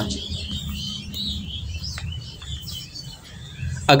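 Faint bird chirps over a low, steady background rumble, with a single short click about halfway through.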